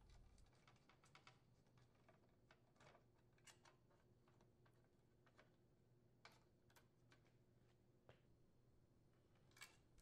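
Near silence, with a few faint, scattered clicks of a screwdriver and a small screw on a sheet-metal control bracket.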